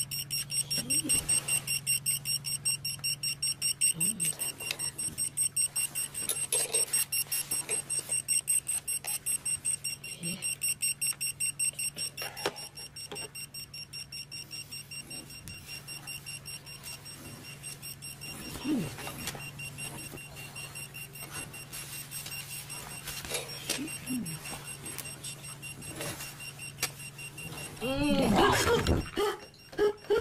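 Small digital alarm clock beeping in a rapid, even, high-pitched rhythm over a low steady hum; the beeping grows fainter about halfway through.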